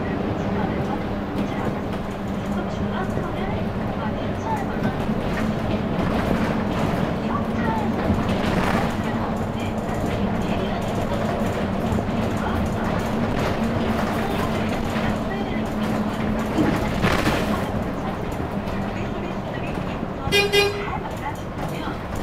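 Inside a city bus on the move: steady engine hum and road noise. A short pitched toot sounds near the end.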